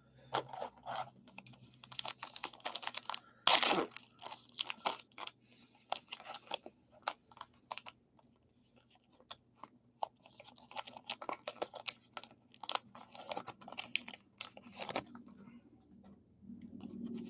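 Trading card pack wrapper being torn open by hand: irregular crinkling and crackling, with one loud rip about three and a half seconds in and another spell of crinkling near the end.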